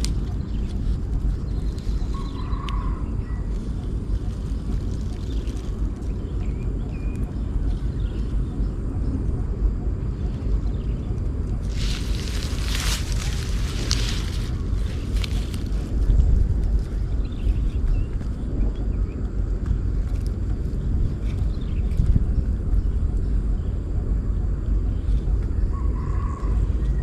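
Wind rumbling on the microphone, steady throughout, with a short burst of crackling rustle about halfway through.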